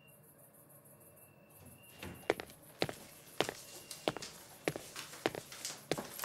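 A person's footsteps walking at a steady pace, starting about two seconds in, roughly two steps a second.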